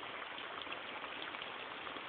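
Water dripping and falling off a mossy rock face onto wet stones below, like rain: a steady hiss of falling water flecked with the small ticks of single drops.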